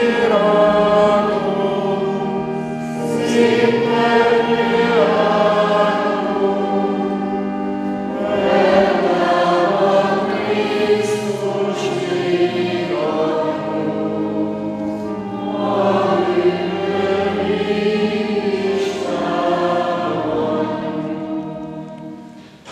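A church congregation singing a hymn in phrases of a few seconds each, over the long held chords of a pipe organ. It is the entrance hymn of a Catholic Mass, which ends just before the priest's opening sign of the cross.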